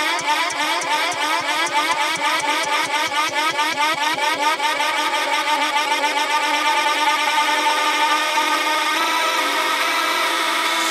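Hard trance music: a fast, buzzy synth riff repeating over and over with almost no bass or kick drum, filling out and growing slightly louder as it builds.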